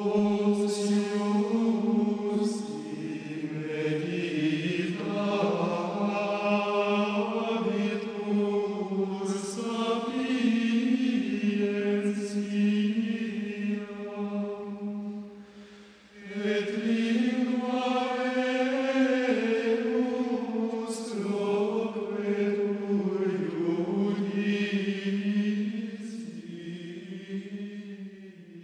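A voice singing a slow, chant-like melody with long held notes, in two phrases with a short break about halfway through.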